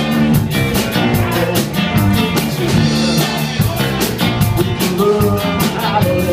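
Live rock band playing: electric guitar, electric bass and drum kit, with a steady, quick cymbal beat.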